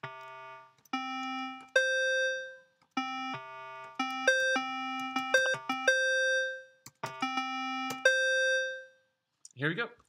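Tone.js web synthesizer in the browser playing the note C in three octaves (C3, C4, C5), triggered from computer keys: about twenty clean, pitched tones in a loose improvised pattern. Some notes are held up to about a second and fade out. There is a quick run of short notes about halfway through.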